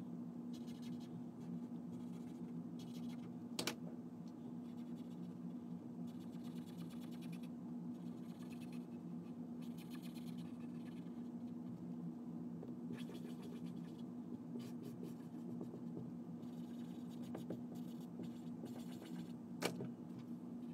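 Felt-tip markers scribbling on paper in short, repeated strokes, over a steady low hum. There is a sharp click about three and a half seconds in and another near the end.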